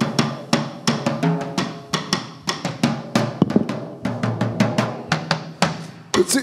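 Drum kit played in a quick, irregular run of strokes on the snare and bass drum, some drums ringing on at a pitch between hits.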